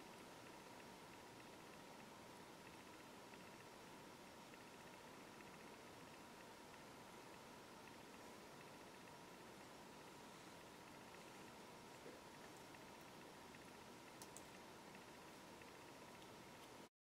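Near silence: steady faint room hiss with a thin steady hum, and a couple of faint ticks in the last few seconds.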